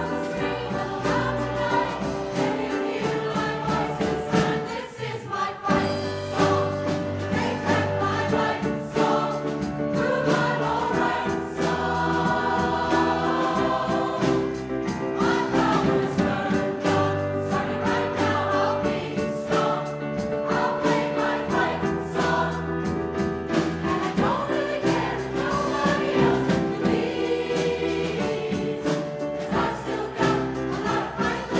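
Mixed choir singing with piano and drum-kit accompaniment, sustained chords over a steady beat. The sound drops briefly about five seconds in, then the full choir comes back in.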